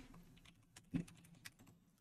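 Faint, scattered clicks of a computer keyboard being typed on, with one slightly louder tap about a second in.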